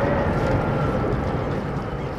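Steady sound of a ferry under way: a low engine rumble with the noise of wind and water.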